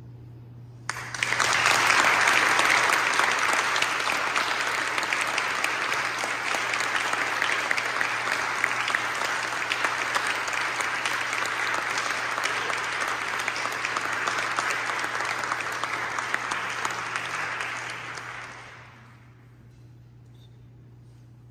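Audience applauding: the clapping starts suddenly about a second in, holds steady, then dies away near the end.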